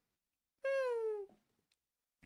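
A single short, high-pitched call that falls steadily in pitch, lasting about two-thirds of a second and starting about half a second in.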